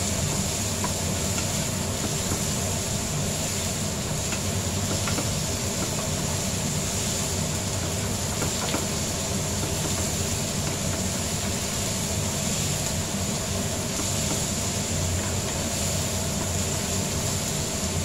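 Onions, tomatoes and fish frying in an oiled pan with a steady hiss, and a spatula scraping and tapping the pan now and then, over a steady low hum.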